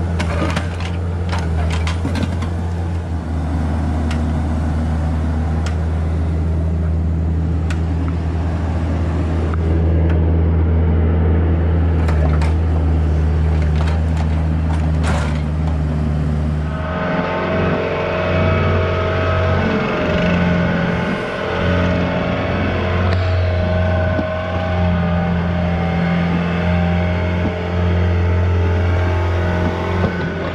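A Bobcat 331 compact excavator runs steadily with a strong low engine hum while its bucket pulls apart a stone-block retaining wall, giving scattered knocks. About halfway through, the machine's note changes and higher steady tones come in.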